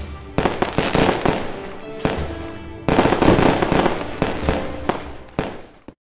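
Fireworks going off, a string of bangs and crackles with the loudest bursts about half a second and three seconds in, over a music bed; it all fades out near the end.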